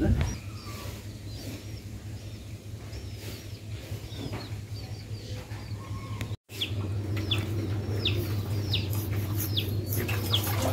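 Small birds chirping over and over, each chirp a short high note sliding downward, over a steady low hum; the sound cuts out for a moment about six seconds in.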